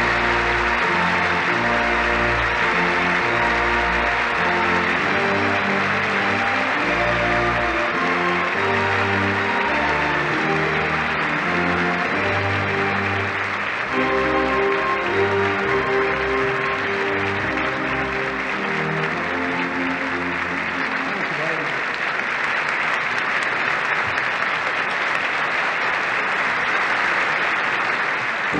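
A large theatre audience applauding steadily while music plays. The music stops a little past two thirds of the way through and the applause carries on.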